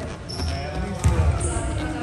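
Indoor basketball court sounds: a basketball bouncing on the hardwood floor with a heavy thump about a second in, brief high sneaker squeaks, and voices talking in the echoing gym.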